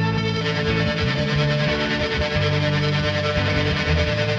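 Electric guitar played through a shoegaze pedal chain: high-gain fuzz, a detuned, non-moving chorus and spring reverb, boosted so the sustained chords blur into a big whooshy wash.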